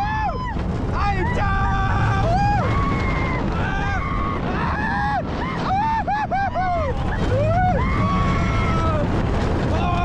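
Riders screaming and whooping on the Expedition GeForce steel roller coaster as the train drops and climbs the next hill. Many short yells rise and fall in pitch, several voices overlap, and a steady low rumble of the train and wind runs underneath.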